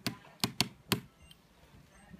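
Fishing line being worked through the adhesive strips under an iPhone battery, giving four sharp clicks in the first second as the line passes through the glue.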